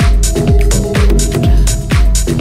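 Techno track from a DJ mix: a steady kick drum about two beats a second, with hi-hats between the kicks and a held synth tone.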